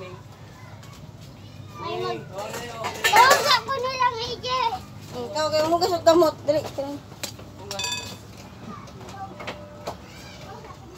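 Young children's voices chattering and calling out, with one loud, high-pitched shout about three seconds in.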